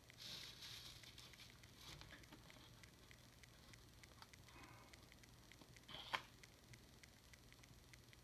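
Near silence with faint handling noises from hands working a small plastic figure and a printed armour sheet: a soft rustle near the start and a single small click about six seconds in.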